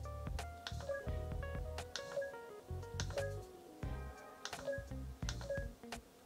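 Eilik desktop robots playing a game tune of short electronic beeping notes that step up and down in pitch, with scattered sharp clicks.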